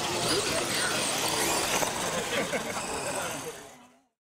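People talking and laughing over the running of an R/C monster truck on grass, the whole sound fading out near the end.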